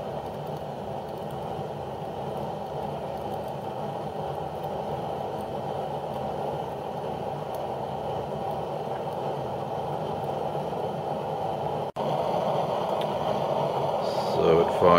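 Boilex Ultraclean 1 fan-assisted stove running at its maximum fan setting, a steady low rushing of the fan and the fan-forced flame of its burning methyl ester fuel blocks. The sound cuts out for an instant near the end and comes back slightly louder.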